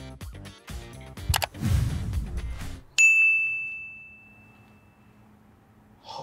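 Background music with a beat, with a low rush near its end, cuts off. Then a single bright ding sounds about halfway through and rings out, fading over about two seconds.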